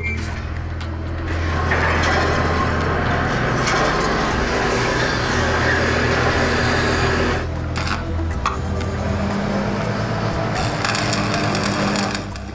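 Heavy construction machinery running, a steady low engine hum with noisy clatter, under background music. Near the end comes a dense crackle of arc welding.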